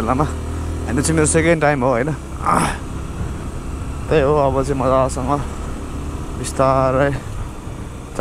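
A voice in drawn-out phrases with wavering pitch, heard three times, over the steady low running and rush of a motorcycle ridden on the road.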